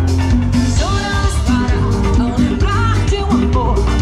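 Live band playing through a loud PA, a woman singing into a microphone over drum kit, bass guitar and keyboards.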